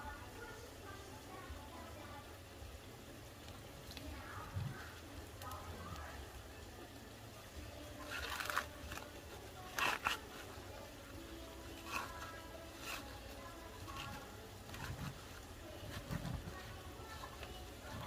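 Green husks being torn and stripped off an ear of fresh sweet corn by hand: brief crisp rustling and tearing, loudest about eight and ten seconds in, over faint background music with singing.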